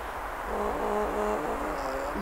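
A woman's voice holding a few steady low notes, starting about half a second in and trailing off near the end.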